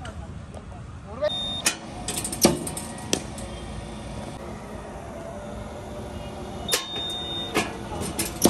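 Cricket net practice: sharp knocks of balls being fired from a bowling machine and struck by the bat, about five knocks in all, in two clusters. A brief high steady tone sounds twice, each ending on a knock.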